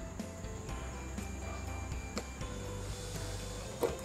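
Quiet background music over a low steady hum, with a few faint clicks of a plastic spoon against a small glass bowl as sauce is scooped and stirred.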